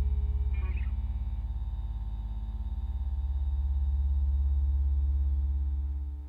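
The final chord of a rock song ringing out on guitar and bass as one low, sustained note. It dies down, swells again about halfway through, and begins to cut away at the very end. A brief scratchy sound comes about half a second in.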